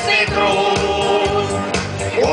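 Amateur mixed choir of women and men singing together through microphones and a PA loudspeaker, over accompaniment with a steady beat.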